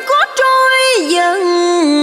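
A woman singing vọng cổ, holding long drawn-out notes that slide up and down between pitches, with brief breaks between phrases.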